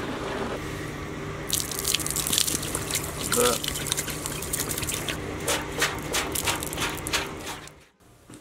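Rust-tinged rinse water gushing out of a motorcycle fuel tank's filler neck and splashing onto concrete, a continuous spatter that starts about a second and a half in and tails off just before the end.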